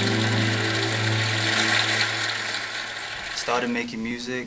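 Live keyboard, electric guitar and bass guitar holding a sustained chord that slowly fades, under a steady wash of noise; a man's voice starts speaking about half a second before the end.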